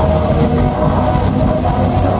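Death metal band playing live: heavily distorted electric guitars and bass over drums, loud and continuous, as picked up by an audience recording.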